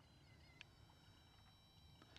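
Near silence: faint background with a few thin, steady high tones and a faint click about half a second in.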